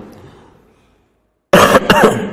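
A man coughing into a close microphone, two harsh coughs in quick succession about a second and a half in, after a short silence.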